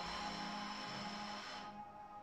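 Soft background music with held, sustained tones, growing fainter toward the end.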